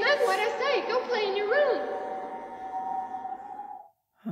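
Film soundtrack: a woman saying "Danny, mind what I say. Go play in your room" over steady, droning held tones of the score, which fade out just before the end.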